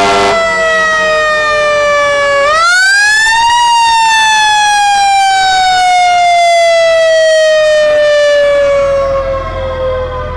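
Fire engine's mechanical siren winding down, spun back up once about two and a half seconds in, then slowly falling in pitch again. A low engine rumble comes in near the end.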